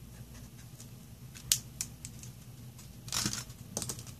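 Desk handling of highlighters and paper: a sharp click about a second and a half in, then another, like a highlighter being capped and set down, then a short scratchy rustle of a paper note sliding across the book page and a few light clicks near the end. A faint low hum runs underneath.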